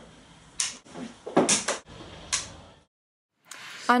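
Wall light switch, a plastic rocker on a two-gang plate, clicked off: three sharp clicks about a second apart.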